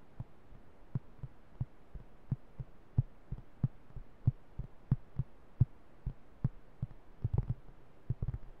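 Fingertips tapping on a plastic flying disc held close to the microphone, dull low thumps about three a second, breaking into a quick flurry of taps near the end.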